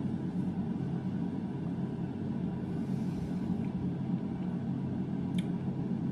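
A steady low hum of room background noise, with one faint click near the end.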